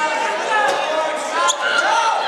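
Several voices shouting over one another in a gym hall, with a couple of sharp thumps about a second apart.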